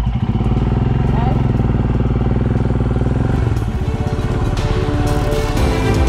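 Royal Enfield Himalayan's single-cylinder engine running just after being started, a steady fast beat of firing pulses. Its note changes about three and a half seconds in as the bike moves off.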